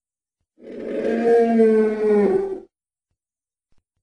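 Dinosaur roar sound effect: one long, pitched roaring call of about two seconds, holding its pitch and sagging slightly before it cuts off.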